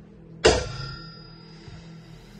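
A single musical hit about half a second in, a struck chord that rings out and fades over about a second and a half, over a faint steady low hum.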